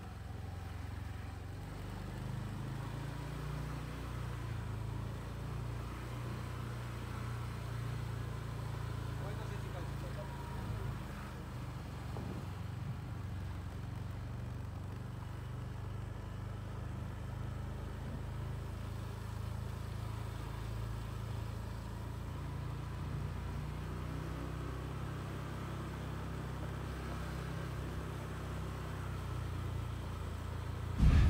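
Faint street ambience: a steady low rumble of distant road traffic.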